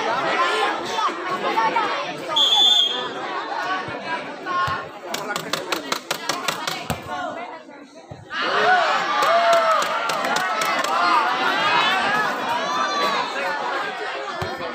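Crowd of spectators chattering and shouting over one another, with a quick run of sharp clicks in the middle, then a louder burst of many voices shouting from just past halfway.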